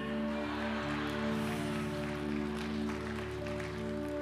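Soft background music of sustained keyboard pad chords, held steady, with the bass note shifting once near the start.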